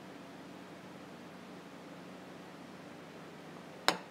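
Quiet, steady room hiss with a faint hum, then a single sharp click near the end: a metal spoon clinking against glass as caramel sauce is spooned from a jar onto a plate.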